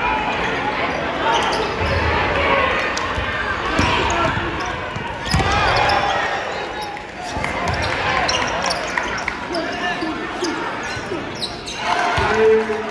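Basketball dribbled on a hardwood gym floor, single sharp bounces scattered through, over continuous chatter of crowd and player voices in a large echoing gym.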